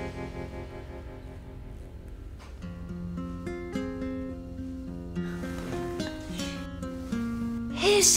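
Background score music: a sustained chord fading away, then a slow melody of held notes beginning about two and a half seconds in.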